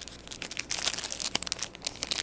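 Clear plastic packaging on a roll of washi tape crinkling as it is picked up and handled. Most of the crackle falls between about half a second and a second and a half in.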